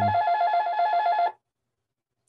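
Electronic telephone ringer warbling, a tone flicking rapidly between two pitches, for just over a second and then stopping.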